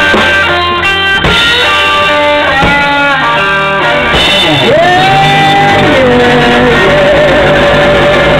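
A live electric blues band playing an instrumental stretch: electric guitar lead over bass guitar and drums. About halfway through, the guitar bends a note slowly up, holds it, and lets it back down.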